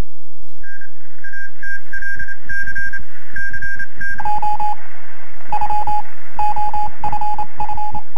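Electronic title-sequence sting made of steady bleeping tones over low pulsing thumps: a run of high beeps, switching about four seconds in to a lower-pitched run of beeps.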